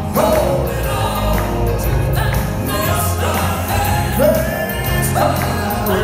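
Southern gospel male quartet singing in close harmony over amplified instrumental accompaniment with a steady bass line; the voices swoop up into held notes roughly once a second.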